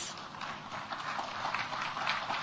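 Audience applauding: a steady mass of many hands clapping together.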